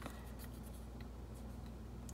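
Faint rustle and light ticks of paper being handled: a folded circle of heavy wallpaper-sample paper and a thin paper message strip, over a steady low hum.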